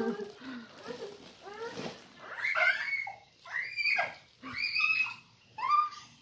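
A one-year-old toddler vocalising without words: a string of short voice sounds that bend up and down in pitch. They grow higher-pitched and come closer together in the second half.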